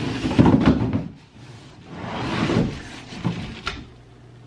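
A large cardboard TV shipping box being lifted and shifted, its cardboard scraping and rustling in two loud bouts, with a short knock near the end as a packed bag of parts drops out onto the floor.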